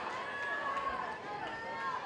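Spectators shouting over one another at a boxing match, several raised voices overlapping without clear words.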